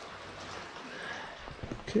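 Rain falling: a steady, even hiss, with a few soft knocks near the end.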